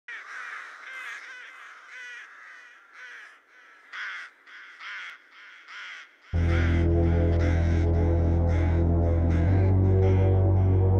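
Crow caws repeating about once or twice a second, played as part of an electronic loop. About six seconds in, a loud, deep synth bass drone comes in abruptly under the caws and holds, its low note shifting shortly before the end.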